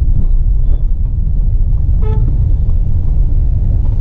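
Hyundai Creta heard from inside the cabin while driving slowly on a rough dirt street, a steady low rumble of engine and road noise. About halfway through, a vehicle horn gives one short toot.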